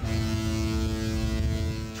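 A ship's horn sounding one long, steady blast at a single low pitch, with a deep rumble beneath it.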